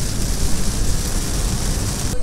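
Car driving on a wet road in rain, heard from inside the cabin: a steady hiss of rain and tyre spray over a low road rumble.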